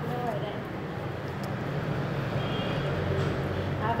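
Steady low background rumble and hum with no distinct events.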